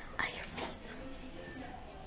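Soft, faint whispered speech from a young woman: a few quiet syllables, mostly in the first second.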